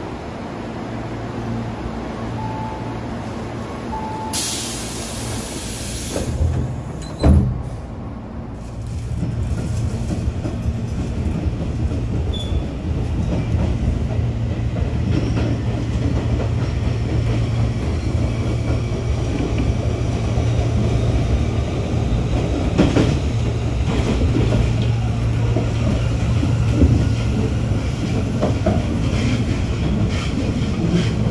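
Tobu 8000 series electric train heard from on board as it pulls away from a station, with a low steady hum throughout. There is a short hiss, then a loud clunk about seven seconds in. After that the running noise of the wheels and motors builds and stays up as the train picks up speed, with occasional knocks over the pointwork and rail joints.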